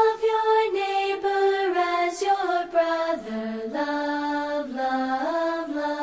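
Children's song music: a slow melody of long held notes that step up and down, sung by a single voice.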